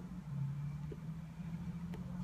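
A steady low engine-like hum, with a few faint clicks as lips draw on a tobacco pipe.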